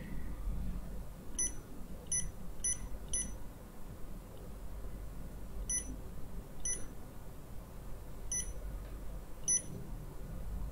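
Touchscreen controller of a Holtop energy recovery ventilator beeping as its mode button is pressed to cycle through display modes: eight short high beeps, four in quick succession about a second and a half in, then four more spaced further apart.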